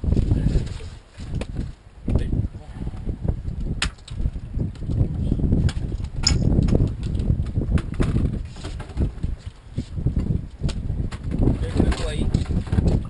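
Wind buffeting the camera microphone in gusts, with a few sharp clicks about four and six seconds in.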